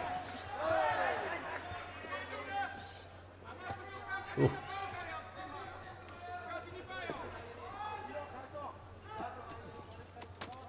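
Kickboxing bout with shouting voices from ringside and the audience throughout; about four and a half seconds in a single strike lands with a sharp, loud impact.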